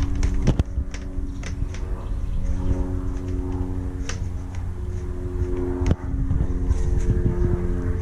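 Steady droning hum of a distant engine under low rumble from wind on the microphone, with a few sharp clicks from handling parts and tools.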